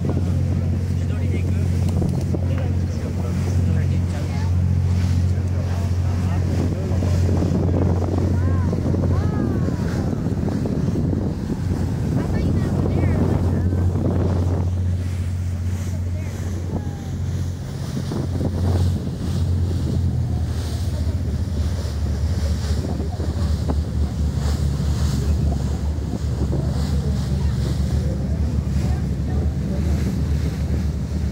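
Speedboat underway at cruising speed: its engines give a steady low drone, with wind buffeting the microphone and water rushing past the hull.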